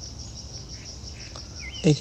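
Insects chirping in a steady, rapid, high-pitched pulsing trill, with a low hum underneath.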